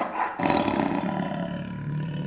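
A tiger roar sound effect that starts abruptly out of silence, surges louder about half a second in, then is held steadily.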